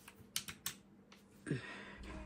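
Three quick, sharp clicks close together, followed near the end by a short hummed 'mm' from a person.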